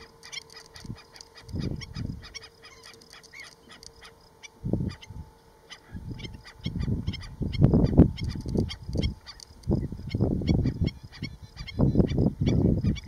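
Black-necked stilts calling: a rapid stream of short, sharp yipping calls. Gusts of wind rumble on the microphone several times, loudest around eight seconds in.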